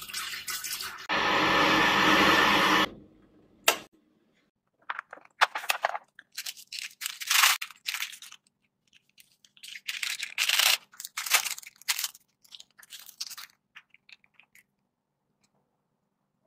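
Water poured from a plastic bottle into a stainless steel kettle, a loud steady pour for about two seconds, followed by a single sharp click. Then a long run of irregular crinkling and rustling as a cup noodle's paper lid is peeled back and its packaging handled.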